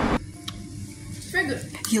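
A spoon lightly clinking against a small bowl in a quiet kitchen, two brief taps, with a short murmured voice sound between them.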